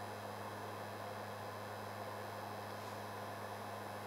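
Heat gun running steadily on its lowest setting: a constant low hum with a faint airy hiss.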